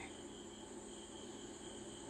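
Faint, steady chirring of crickets in the background.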